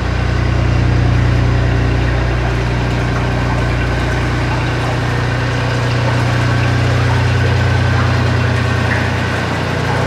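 A narrowboat's inboard engine running steadily at low speed beneath a concrete road bridge. Its deepest part fades about halfway through as the boat moves away.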